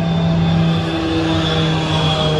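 A small propeller plane flying overhead, heard as a steady engine drone.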